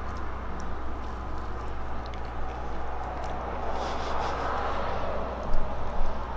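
A person chewing a bite of brownie with the mouth closed, with faint scattered mouth clicks and a sharp smack near the end, over a steady low hum.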